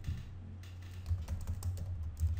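Computer keyboard keys being typed, a handful of separate clicks over a steady low hum.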